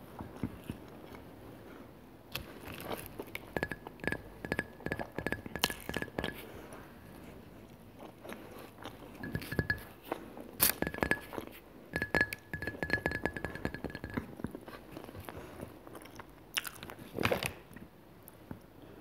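Close-miked ASMR mouth sounds: crackly chewing and crunching in irregular clicks, with a glass mug clinking as it is handled. A thin, steady high tone comes and goes several times alongside the clicks.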